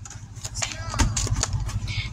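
Tarot cards being handled and shuffled close to the microphone: rustling and small taps, with a low bump about a second in.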